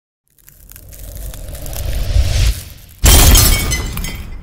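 Logo-intro sound effect: a low rumbling swell that builds for about two seconds and drops away, then a sudden loud crash of shattering glass about three seconds in, its debris trailing off.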